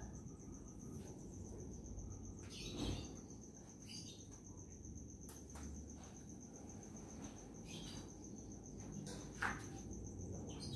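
A faint, steady, evenly pulsing high-pitched insect trill, with a few short chirps over it, the loudest a brief falling one near the end, and a low background hum beneath.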